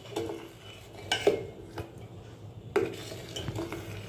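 Steel ladle stirring thin pearl millet porridge in a steel pot, clinking against the pot a few times, the loudest about a second in and near three seconds.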